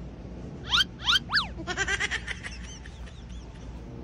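Three loud, quick swooping high chirps about a second in, followed by a fast stuttering run of calls, about ten a second, that trails off into a few fainter arching calls.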